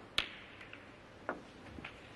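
A snooker cue tip clicks against the cue ball, and a moment later comes a louder, sharp click as the cue ball strikes the pink. About a second later there is another knock, with a fainter click near the end, as the balls settle and the pink is potted.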